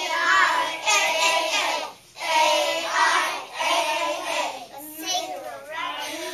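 A group of young children chanting together in unison, a phonics chant of the long-a vowel team 'ai', in short rhythmic phrases with brief pauses between them.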